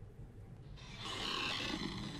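An animated character snoring on the film soundtrack: a faint, breathy rasp that begins about a second in after a near-quiet moment.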